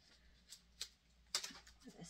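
Faint handling noise: a few short crackles and rustles as a paper sticker is peeled off a roll and a plastic poly mailer is handled, with the sharpest crackle about two-thirds of the way through.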